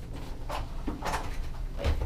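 A few short knocks and clunks of a restroom door being opened and handled.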